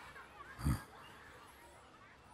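Quiet outdoor ambience with faint, scattered bird chirps, and one short low thump about two-thirds of a second in.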